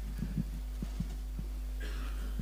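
Steady low hum of the church sound system, with about six soft, irregular thumps as the congregation stands and shifts.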